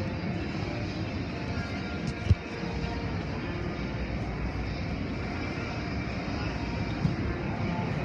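Automatic car wash machinery running steadily: spinning wash brushes and water spray, with a sharp knock a little over two seconds in and a smaller one near the end.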